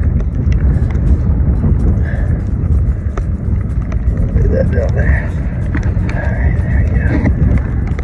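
Wind buffeting the phone's microphone, a heavy, uneven low rumble, with small clicks from handling fishing line and lures.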